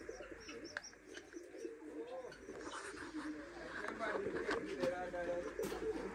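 Domestic pigeons cooing, several low, wavering coos overlapping.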